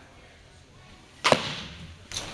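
A pitched baseball smacking into a catcher's mitt a little over a second in: one sharp pop that echoes briefly.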